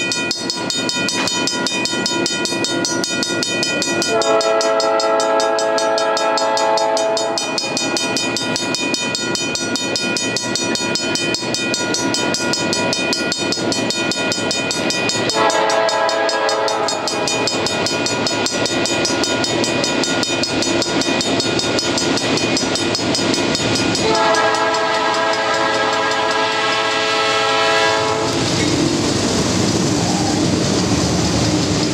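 Horn of an approaching GE C40-8M diesel freight locomotive sounding three blasts, long, shorter, long, over the train's steady running sound. Near the end the locomotives reach and pass close by, and the engine and wheel rumble swells.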